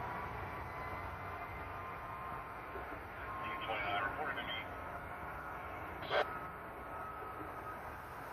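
Steady low background rumble. A faint distant siren wails at the start, a short burst of scanner radio sound comes about halfway through, and one sharp click follows a little after six seconds.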